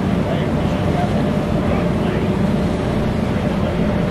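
Steady low rumble of a passenger boat under way, mixed with wind on the microphone, with indistinct voices of people nearby.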